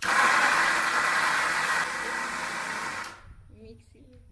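Electric mixer grinder with a stainless-steel jar running, blending ripe mango into pulp. It starts abruptly, drops somewhat in loudness about two seconds in, and stops after about three seconds.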